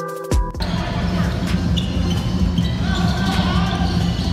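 Electronic background music that cuts off about half a second in, giving way to basketball game broadcast sound: a ball bouncing on a hardwood court over a steady arena bed.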